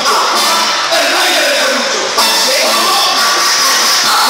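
Loud dance music over a sound system with a crowd shouting and cheering over it, picked up by a phone's microphone.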